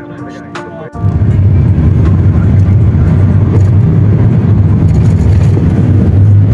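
Background music for about the first second, then an abrupt cut to the steady, loud low rumble of a car driving on the road, heard from inside the car.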